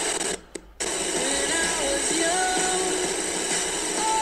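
A small passive PC speaker plays a pocket radio's output through a single BC547 transistor amplifier: steady amplified radio hiss with faint traces of a broadcast in it. It cuts out briefly about half a second in, then resumes.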